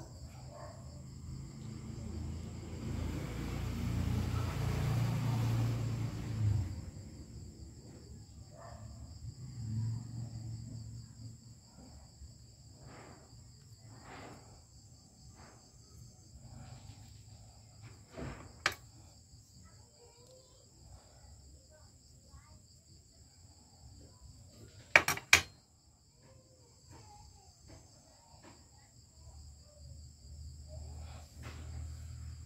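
Crickets trilling steadily in the background, two high-pitched trills running together. Over it, hands handle a circuit board: a stretch of rustling in the first six seconds, a single click about halfway through, and two sharp clicks close together about 25 seconds in, the loudest sounds.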